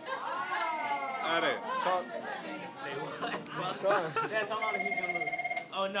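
Several young people talking over each other. An electronic trilling ring, about a second long, sounds twice: once shortly after the start and again near the end.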